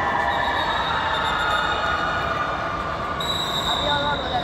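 Shouting voices and crowd noise in a reverberant indoor sports hall, with a shrill whistle. The whistle sounds faintly early on and is held loudly for about the last second.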